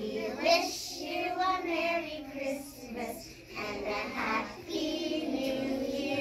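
A group of young children singing a song together, in phrases that carry on through the whole stretch.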